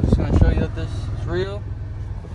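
Brief bits of a man's voice over the steady low rumble of a car, heard inside the cabin.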